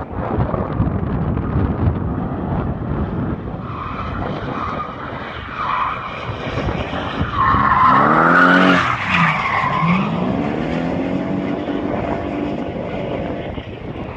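BMW E30 drift car's engine revving hard while its tyres squeal through a slide. It is loudest about eight seconds in, as the car passes close, and its engine note drops and then climbs again.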